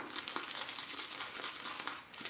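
Synthetic shaving brush pressed and worked into wet bits of shaving soap in a ceramic lather bowl: a faint, crackly squishing of lather beginning to form.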